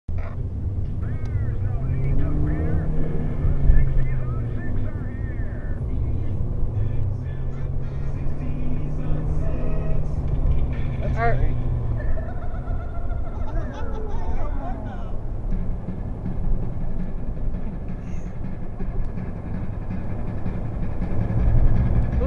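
Engine and tyre noise inside a moving car's cabin: a steady low rumble, with a song with vocals playing over it.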